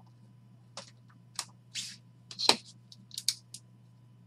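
Trading cards and hard plastic card holders handled on a table: a string of short rustles and clicks, with the sharpest clack about halfway through, over a faint steady hum.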